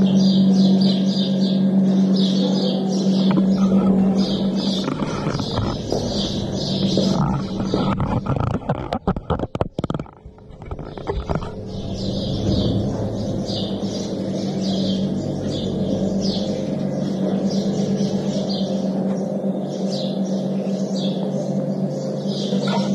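Small birds chirping in quick, regular, high-pitched repeats, over a steady low hum. About eight seconds in there is a short flurry of clicks and rustling and the sound dips for a moment, then the chirping carries on.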